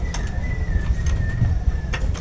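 Light clicks and rattles from the door of a wooden, wire-mesh rabbit hutch being handled, with a few sharp clicks near the start and end. A thin, steady high tone runs underneath.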